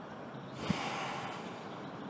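A single deep breath through the nose, close to the microphone, lasting about a second, with a brief low thump as it begins.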